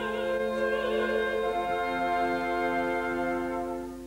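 Operatic soprano singing with wide vibrato over an orchestra. Her phrase ends about a second and a half in, and the orchestra holds a sustained chord that fades away near the end.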